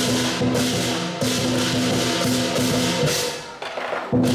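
Southern lion dance percussion: a lion drum, gong and many pairs of hand cymbals playing a steady, clashing rhythm. The playing drops away briefly near the end.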